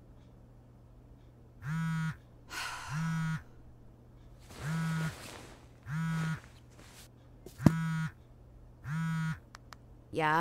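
A mobile phone vibrating with an incoming call: three pairs of short buzzes, with about a second between the two buzzes of a pair. A sharp click comes shortly before the last pair.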